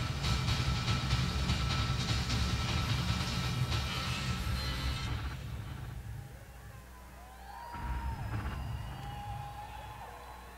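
Live drums-and-electronics improvisation: a dense percussive texture with a deep low rumble and sharp hits. About five seconds in it thins out to sparse electronic tones that slide up and down in pitch.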